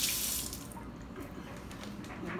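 Kitchen tap running water into the sink, shut off about half a second in.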